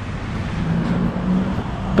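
Road traffic noise: a steady rush of passing vehicles, with an engine hum that rises out of it from about half a second in and fades near the end.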